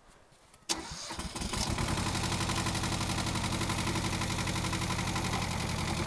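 Small diesel tractor engine starting: a sudden crank about a second in, catching and settling within a second into a steady, loud idle.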